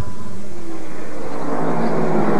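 NASCAR stock car V8 engines running at speed on track, a steady engine and tyre noise with no voices over it.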